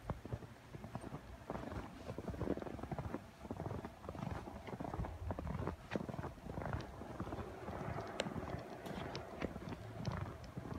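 Footsteps crunching through fresh snow, an irregular run of crisp crunches.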